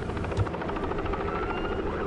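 Helicopter rotor chopping steadily in rapid, even beats over a low engine rumble.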